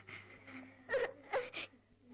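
A young girl crying: a shaky breath, then two short sobbing wails about a second in.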